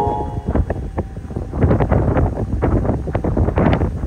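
Wind buffeting the microphone in uneven gusts over a low rumble, recorded from a boat moving across a lake.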